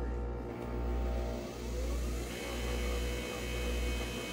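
Nespresso Vertuo coffee machine brewing a capsule: a steady low motor hum that swells and dips about once a second. A faint high whine joins in about halfway through.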